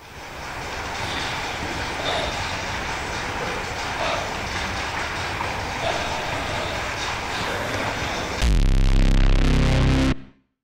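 A steady rumbling noise with faint tones in it, like a passing train. About eight and a half seconds in, it gives way to a much louder, deep drone that cuts off suddenly at the end.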